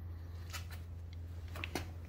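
Quiet room tone: a steady low hum with a few faint clicks.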